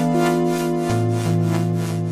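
Charlatan virtual-analog software synthesizer playing held, overlapping notes on a pulse-width-modulation patch. A lower bass note comes in about a second in.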